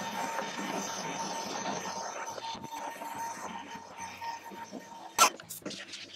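Cordless handheld vacuum cleaner running at a lower level while cleaning out a drawer: a steady hiss with a faint whine that fades over the first few seconds. A sharp knock comes about five seconds in.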